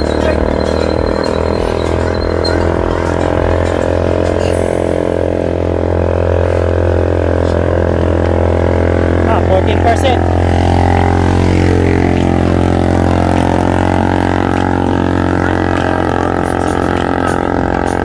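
Motorcycle engine running at a steady cruising speed, a constant low drone whose pitch shifts slightly past the middle.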